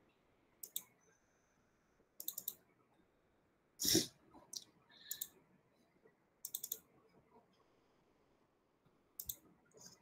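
Intermittent clicking at a computer, in short clusters every second or two, with a louder knock about four seconds in.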